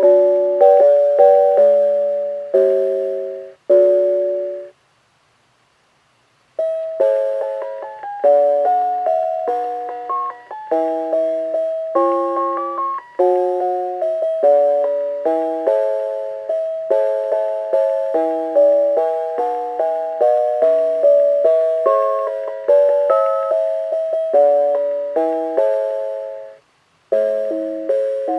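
Mr. Christmas Bells of Christmas musical decoration playing Christmas carols in bell-like chime tones through its small speaker box, each note struck and fading. One tune stops about five seconds in, and after a two-second silence the next begins; another short pause comes near the end.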